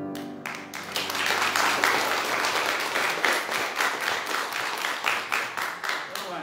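A congregation applauding with many hands clapping, starting as a sung piece of music cuts off at the very beginning. The clapping holds steady and begins to fade near the end.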